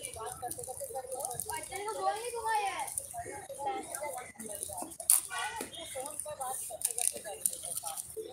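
Indistinct voices of people talking close by. A single sharp click about five seconds in is the loudest sound.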